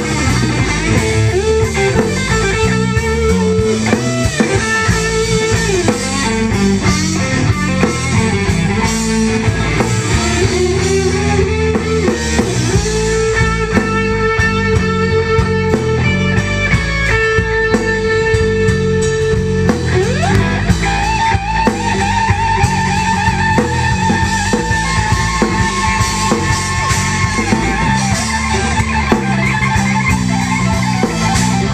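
Live electric guitar lead on a Stratocaster-style guitar in a slow blues, playing long held notes with string bends, including a rising bend about two-thirds of the way through, over the band's drums.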